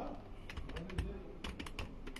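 Faint, irregular light clicks and taps, a dozen or so in two seconds, over a low steady background hum.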